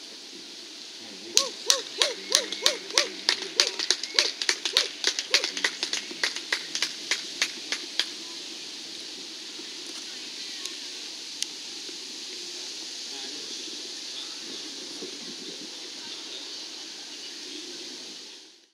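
One person clapping, about three claps a second, starting about a second and a half in and fading away over some six seconds, followed by a steady outdoor hiss.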